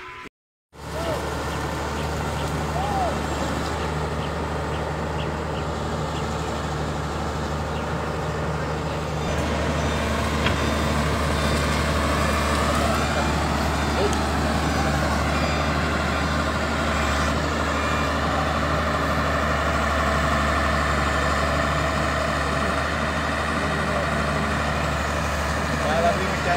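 Diesel engine of a Samsung wheeled excavator running steadily as the machine works, with a strong low hum, getting a little louder about nine seconds in.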